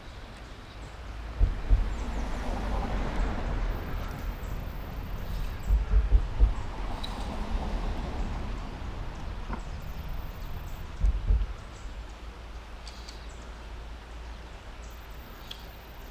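Outdoor noise by a river: a steady hiss of moving water and air, with wind buffeting the microphone in low rumbling gusts about a second and a half in, around six seconds and again about eleven seconds in.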